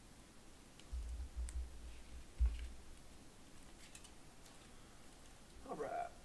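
Faint clicks and light handling noise of trading cards being slipped into plastic sleeves and top loaders, with a few dull low bumps against the table, the loudest about two and a half seconds in.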